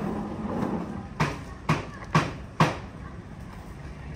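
Sliced green chili peppers scattered from a plastic bowl onto raw marinated meat in a large metal pot, a soft clatter in the first second, then four sharp knocks about half a second apart.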